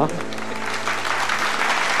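Studio audience applauding, a steady clatter of many hands clapping.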